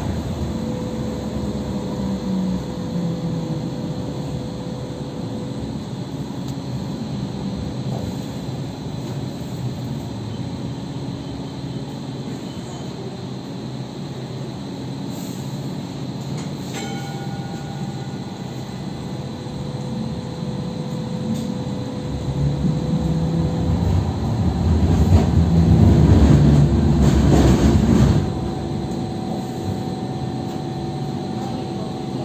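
Hong Kong Light Rail Phase I car running, heard from inside the carriage: a steady drone and rumble of the car and its wheels on the rails. About three-quarters of the way through the noise swells to its loudest for several seconds, then drops off suddenly near the end.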